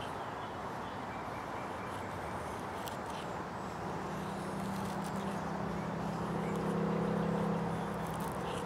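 Helle Temagami knife's laminated steel blade shaving thin feather curls off a wooden stick. From about four seconds in, a low steady engine hum from a distant vehicle grows a little louder and becomes the loudest sound.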